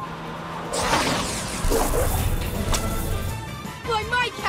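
Cartoon car sound effects for the Cat-Car speeding along, mixed with background music: a sudden rushing whoosh about a second in, then a loud low rumble around two seconds in.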